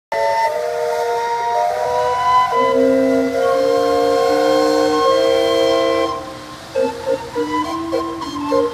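Steam calliope of the sternwheeler Natchez playing a tune: whistle notes held for about half a second to a second each, several sounding together as chords. About six seconds in the playing drops in level and the notes turn short and choppy.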